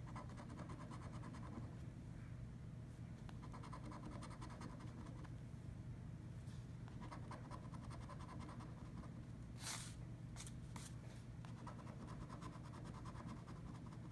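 Quiet, rapid scratching of a coin rubbing the latex coating off a scratch-off lottery ticket. It comes in several spells with short pauses between them, and a few sharper clicks about ten seconds in.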